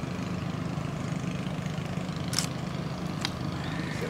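An engine running steadily with a low, even drone, with two short clicks in the second half.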